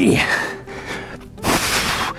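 A man breathing hard under effort while holding a plank: a voiced breath right at the start, then a loud, sharp exhale about one and a half seconds in.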